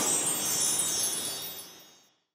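Bright, shimmering chime sound effect of a logo sting, like a cascade of wind chimes, starting loud and fading away over about two seconds.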